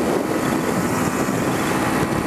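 Yamaha 150 cc single-cylinder motorcycle engine running steadily at highway cruising speed, mixed with a continuous rush of wind and road noise.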